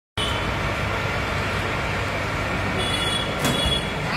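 Steady, loud mechanical rumble and hiss, like a running vehicle engine, with a faint high whine and a single click in the last second.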